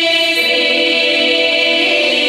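Bulgarian women's folk choir singing long held notes in several voice parts, moving to a new chord a little under half a second in.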